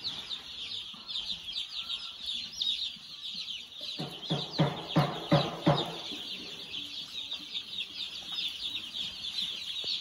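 Dense, continuous high-pitched peeping of a large flock of day-old broiler chicks. About four seconds in, a quick run of five or six louder, lower sounds cuts through for about two seconds.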